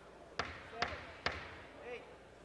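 Three sharp knocks about half a second apart, each ringing on briefly in a large hall, with a faint voice near the end.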